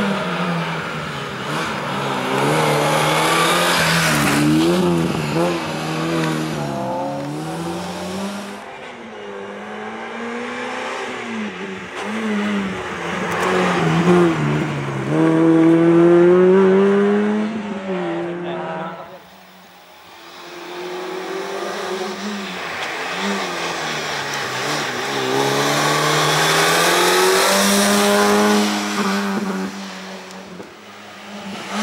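Peugeot 106 hatchback race car's four-cylinder engine revving hard through a cone slalom, its pitch climbing and dropping again and again as it accelerates and lifts. About twenty seconds in, the engine sound briefly falls away, then comes back revving.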